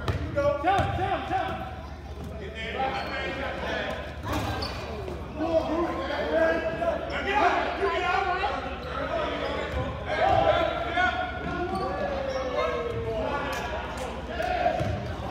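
A basketball dribbled on a gym's hardwood floor, with several people's voices talking and calling out over it. The sound carries the hall's reverberation.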